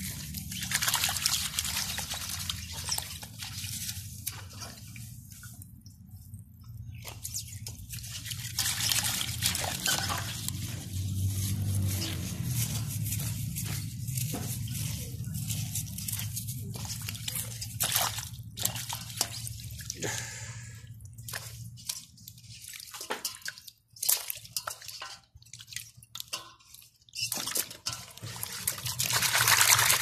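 Water splashing, sloshing and dripping in a stainless steel bowl as hands scrub snake carcasses with a bunch of grass, in fits and starts with a more vigorous splash near the end.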